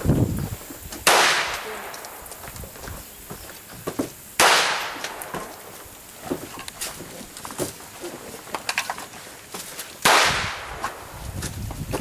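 Three gunshots, several seconds apart, each followed by a short ringing decay.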